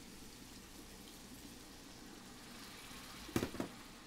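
Red wine poured into a hot pan of sautéed red peppers and onions, sizzling and simmering faintly and steadily. A brief knock near the end.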